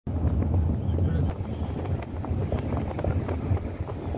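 Wind buffeting the microphone: a heavy, uneven low rumble throughout.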